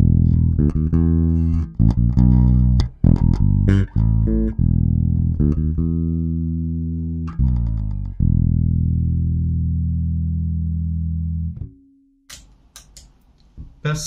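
Boldogh Jazzy 5 five-string electric bass played fingerstyle through a Prolude KO750 bass amp and 212 cabinet: a run of plucked notes, then one long note left to ring for about three seconds before it is cut off, with a few faint string noises near the end.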